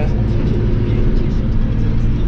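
Tractor engine running at a steady pitch, heard from inside the cab as the tractor drives along.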